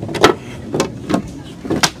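Rigid fiberglass mold pieces knocking and clattering together as they are handled, several sharp knocks with the loudest about a quarter second in.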